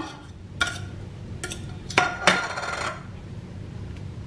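Metal spoon scraping and clinking against open aluminium tuna cans, with a few sharp clinks, one of them ringing for about a second.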